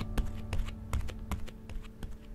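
A run of small, irregular clicks and taps, several a second, over the fading tail of a held musical note.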